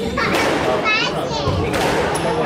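Squash rally: a squash ball struck hard twice, about a second and a half apart, with short high squeaks of court shoes on the wooden floor between the shots and voices in the background.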